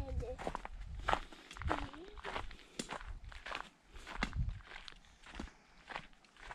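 Footsteps on a dry, grassy dirt footpath, walking at a steady pace of about two steps a second, with a short murmur of voice about two seconds in.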